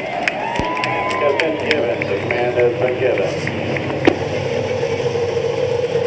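A grid of Honda V8-engined IndyCars starting up: engines firing and revving, with crowd cheering. From about four seconds in, a steady engine note holds.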